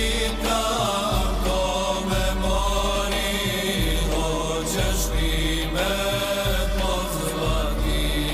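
Choir singing an ilahija, a Bosnian Islamic devotional hymn, in long drawn-out notes over a sustained low bass.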